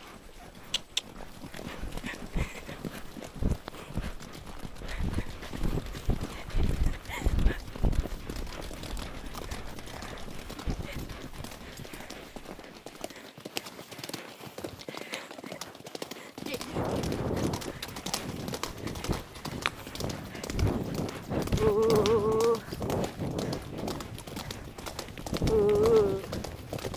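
Hoofbeats of several horses on a wet gravel track, coming thicker and faster in the second half as the horses pick up into a canter.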